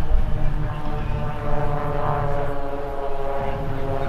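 Droning of a performing airshow aircraft's engine: one steady pitched tone with even overtones, a little stronger about two seconds in. Wind rumbles on the microphone underneath.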